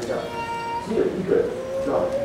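A man's voice lecturing in a hall in short broken phrases, joined about two-thirds of the way in by a steady, even tone that holds without changing pitch.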